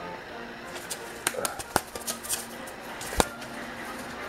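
A white dove scrabbling and flapping its wings as it climbs onto a hand from a desk. The sound is a scatter of sharp clicks and feather rustles, with two louder knocks, one near the middle and one near the end.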